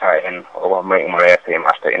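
Only speech: one voice talking steadily, with brief gaps between phrases.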